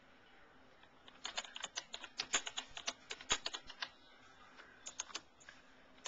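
Typing on a computer keyboard: a quick run of keystrokes from about a second in until about four seconds, then a few more keystrokes near the end.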